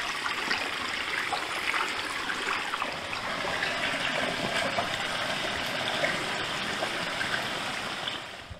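Small woodland stream trickling and splashing over stones, a steady running-water sound.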